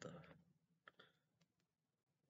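A man's quiet voice saying a word at the start, then a handful of faint, sharp clicks in near silence.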